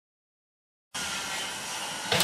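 Complete silence for about the first second, then a steady hiss of background noise that starts abruptly and holds even to the end.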